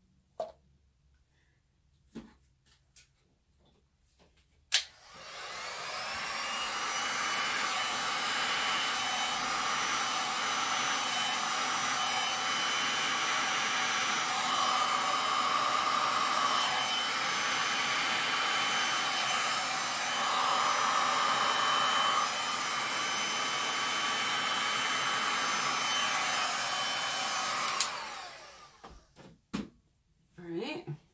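Heat gun switched on with a click about five seconds in, then running steadily with a fan whine for over twenty seconds. It is switched off near the end, and the whine falls away as the fan winds down.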